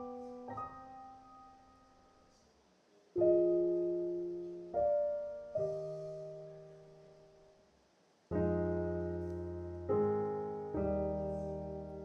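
Slow, quiet piano music: single chords are struck a second or more apart and each is left to ring and fade. In the second half the chords are fuller and deeper.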